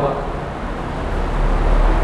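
Whiteboard marker rubbing across the board as a short term is written, over a low rumble that builds toward the end.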